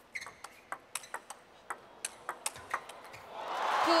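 Table tennis rally: the plastic ball clicks sharply off rubber-faced bats and the table, about a dozen hits a few tenths of a second apart. Near the end, as the rally finishes, crowd cheering and applause swell up.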